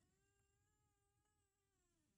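Near silence, with only a very faint, steady pitched tone underneath.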